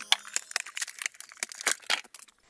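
Rigid plastic blister packaging crackling and clicking as it is pulled apart by hand to free a power-tool battery: a quick, irregular run of sharp crackles.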